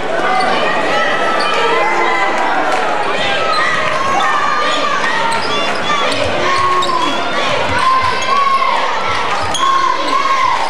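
Basketball being dribbled on a hardwood gym floor, the thuds clearest about six to nine seconds in, under continuous crowd chatter and shouting voices in a large echoing gym.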